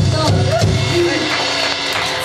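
Live band playing amplified with bass and drums, a voice over it; about halfway through the bass and drums fall back, leaving a held note.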